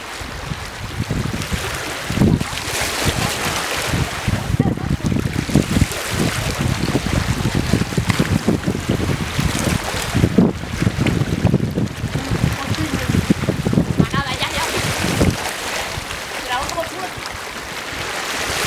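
Wind buffeting the microphone over the sound of the sea lapping around the rocks, in uneven gusts.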